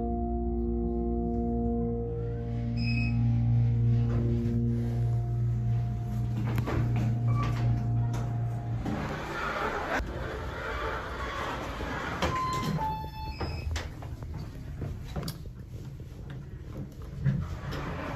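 Kone hydraulic elevator car descending, with a steady low hum and sustained tones that stop about nine seconds in as the car settles at the lower floor. The doors then open onto a busier room sound, and a short two-note chime falling in pitch follows a few seconds later.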